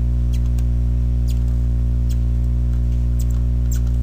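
Steady low electrical mains hum on the recording, with a handful of faint, irregular clicks from a graphics-tablet pen tapping to place curve points.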